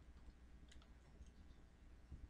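Near silence with a few faint computer keyboard key clicks as text is typed.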